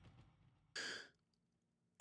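Near silence as the tail of the jingle fades away, broken about three-quarters of a second in by one short breath, about a third of a second long.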